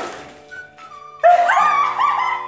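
A sharp slap of whipped-cream-covered hands right at the start. About a second in comes a loud, high-pitched squeal of laughter, over background music.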